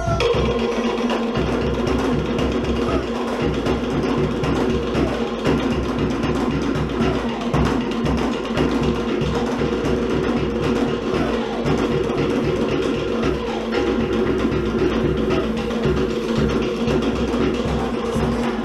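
Live Cook Islands drum music: a fast, driving rhythm on wooden slit drums with a deeper drum underneath, playing continuously.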